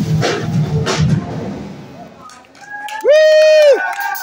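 The rock band's playing fades out over the first couple of seconds. Near the end, a voice gives one loud, drawn-out yell through the PA, swooping up into it, holding for most of a second and dropping off at the end.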